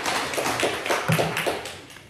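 Hand clapping after the closing "Amen, Hallelujah" of a prayer: quick, even claps about five or six a second that fade out near the end.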